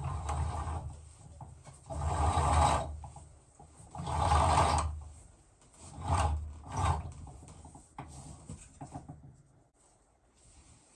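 Rope rasping through an overhead hoist as it is pulled hand over hand to lift a large water jug, in a series of pulls, the two longest and loudest about two and four seconds in, then two short ones.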